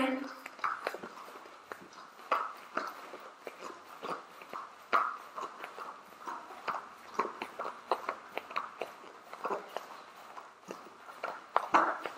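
Quick, irregular soft thuds and taps of several people's feet landing on exercise mats and the floor during mountain climbers.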